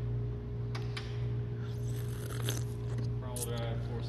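Scattered clicks and clunks of a 2009 Nissan Versa's hood being unlatched and lifted open, over a steady low hum.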